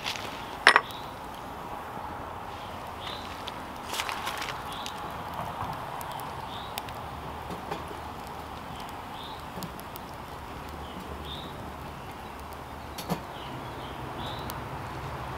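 Small twig fire burning in a metal rocket stove under a teapot, crackling with scattered sharp pops, the loudest about a second in, over a steady rush.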